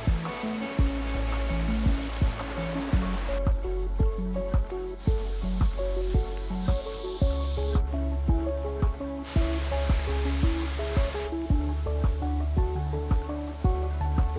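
Background music with a steady beat of about two strokes a second over a moving bass line. A rushing stream is heard beneath it in some stretches, cutting in and out abruptly.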